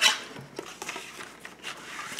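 A plastic paper trimmer set down on a wooden table with one sharp knock at the start, followed by soft rustling and small clicks of paper and plastic being handled under it.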